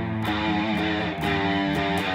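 Electric guitar playing blues lead notes, some of them held with vibrato, over a bass backing line.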